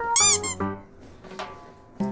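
A short, high, wavering squeak in the first half second, over light background music with single plucked notes.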